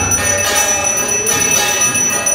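Temple aarti bell ringing continuously, with devotional music going on behind it.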